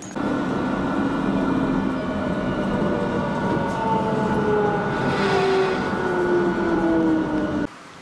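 London Underground train heard from inside the carriage: a steady rumble with a whine of several tones that slowly falls in pitch as the train slows into a station. It starts and cuts off suddenly near the end.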